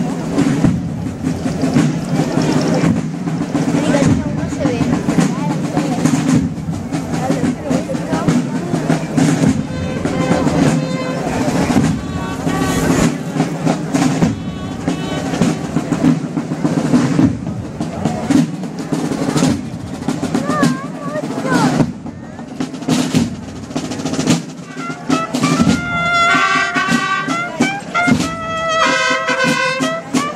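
Procession drum-and-trumpet band: side drums beating a continuous rapid march cadence, with trumpets coming in near the end playing a short melody in separate notes.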